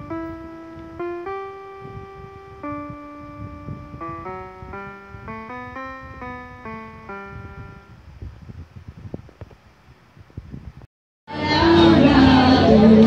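A Global GL-220 electronic keyboard playing a simple melody one note at a time, with the notes stopping about eight seconds in. Near the end the sound cuts sharply to loud live music with singing.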